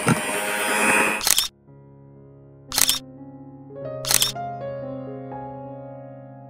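An electric hand mixer runs in a bowl of cake batter for about a second and a half, then cuts off abruptly. Soft piano music follows, with two sharp clicks about a second and a half apart.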